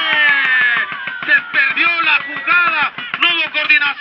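Only speech: a man's rapid, excited football play-by-play, opening with a drawn-out call that falls in pitch.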